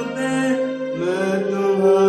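Male voice singing long held notes over electronic keyboard accompaniment, a new sung note starting about a second in.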